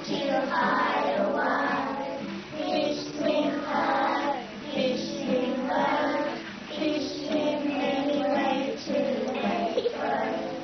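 A group of young children singing a song together, with a woman singing along, accompanied by a strummed classical guitar. The singing comes in phrases with short breaths between them.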